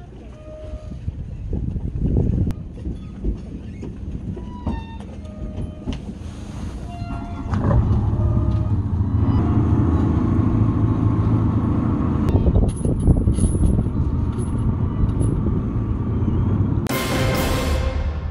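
A small fishing boat's engine passing close by: a steady low drone that comes in about eight seconds in, swells, and runs until near the end.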